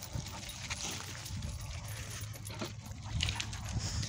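Faint sounds of two puppies moving on leash over dirt ground while tracking a scent, under a low steady rumble.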